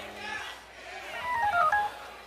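A quick run of about a dozen short electronic beeps in under a second, jumping between high and low pitches and falling overall. It comes a little over a second in and is the loudest sound here.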